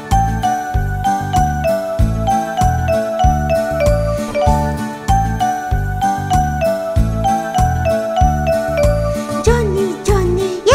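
Instrumental children's-song music: a bright, bell-like melody stepping over a steady bass beat.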